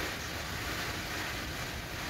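A steady hiss with no rhythm or pitch, running evenly at a moderate level.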